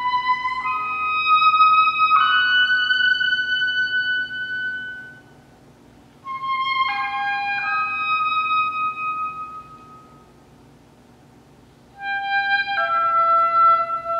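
Solo woodwind playing unaccompanied, high sustained notes in three short phrases, with the hall's reverberation dying away in the pauses between them.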